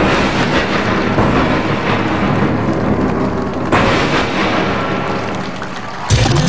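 Large gong struck a few times, each stroke a loud crash. The crash rings on in a dense shimmering wash, with a strong stroke near the four-second mark, and thins out toward the end.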